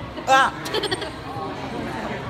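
Background chatter of people in a theater, broken about a third of a second in by one short, loud, high-pitched voiced cry.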